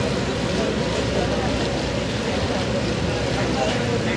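Passenger river ferry's engine running as the boat approaches: a steady low rumble under even background noise.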